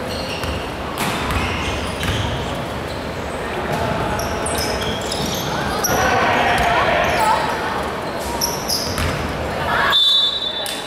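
Basketball bouncing on a hardwood gym floor, with short high squeaks of sneakers and players calling out, all echoing in a large hall. The voices are loudest about six to seven seconds in.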